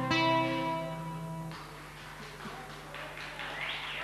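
The final chord of a song on an acoustic guitar rings out for about a second and a half and fades. Scattered applause from the audience follows.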